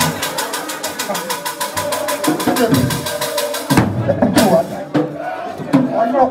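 Fast, even percussion strokes, around a dozen a second, with voices over them, stopping abruptly about four seconds in. After that come voices and two short, loud bursts of noise.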